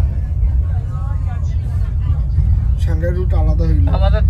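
Steady low rumble of a bus's engine and tyres, heard from inside the moving bus on a highway. A voice starts talking over it near the end.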